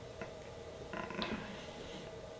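Glue stick rubbed across a glass 3D-printer build plate: faint creaky rubbing strokes, strongest about a second in, with a few small clicks.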